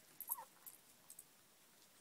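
Mostly quiet yard, broken by one brief animal call about a quarter second in, then a few faint ticks.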